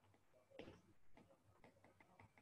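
Near silence with faint, irregular ticks of a stylus tip tapping on a tablet's glass screen as words are handwritten.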